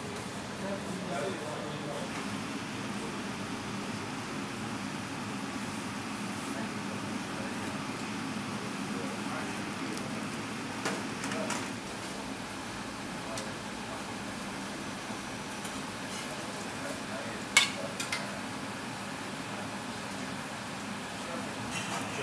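Steady low hum and hiss of a commercial kitchen, with a gas burner going and faint voices in the background. Two sharp clinks of metal on the aluminium serving trays come about three-quarters of the way through.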